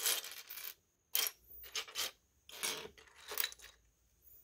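Loose plastic LEGO pieces clattering against each other and the wooden tabletop as a hand sifts through a pile, in about three bursts of rattling.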